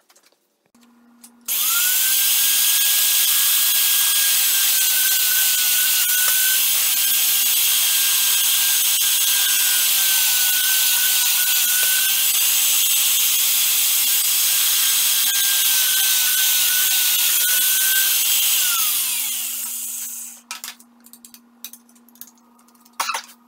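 Atra Ace magnetic drill press motor spinning up, running steadily while drilling a hole in a metal plate, its pitch wavering three times as the bit cuts, then winding down near the end. A steady low hum starts just before the motor and stays on after it stops.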